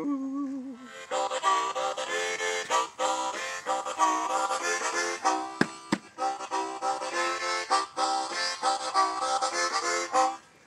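Harmonica played in a blues style: fast, rhythmic chords with short breaks.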